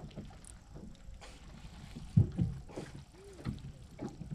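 Wind and water noise around a small fishing boat, with a single loud knock on the boat about halfway through.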